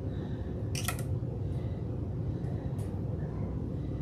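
Short clicks and crackles of a clear plastic orchid pot being handled as a wire stake is worked down into the moss, the sharpest about a second in and a few fainter ones near three seconds, over a steady low hum.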